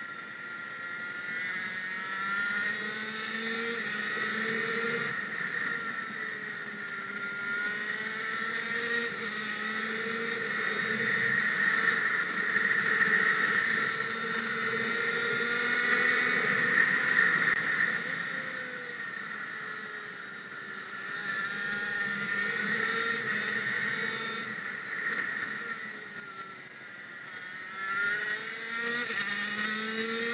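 Race motorcycle engine heard from the rider's helmet on a circuit lap, its pitch rising under acceleration and dropping as it eases off. It is loudest in the middle and climbs again in rising sweeps near the end.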